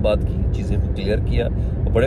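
A man talking inside a car's cabin over a steady low rumble from the car.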